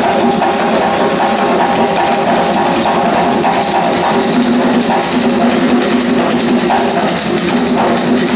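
Ensemble of hand-played barrel drums playing Puerto Rican bomba and plena rhythms live, a dense, steady drumming with no break.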